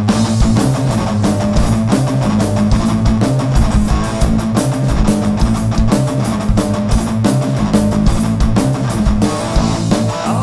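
Live rock band playing loud with electric guitars, bass and a drum kit; the full band comes in at the start after a lighter guitar passage, drums hitting a steady driving beat.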